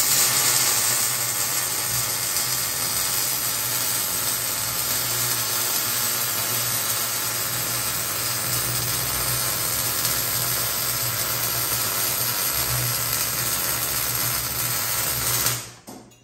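Millermatic 252 MIG welder laying a continuous bead: a loud, steady sizzling arc that strikes at once and breaks off abruptly just before the end, over a low electrical hum.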